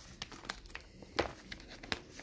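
Red plastic courier pouch crinkling and crackling as it is handled and pulled at, in scattered small crackles with a couple of sharper ones, one about a second in and one near the end.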